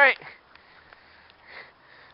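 A man says "right", then a short, faint sniff about one and a half seconds later over a quiet outdoor hiss.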